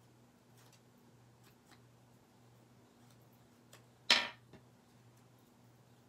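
Faint handling of craft tools and paper over a steady low electrical hum, with a few tiny clicks; about four seconds in, one short, sharp knock as a tool or bottle meets the table.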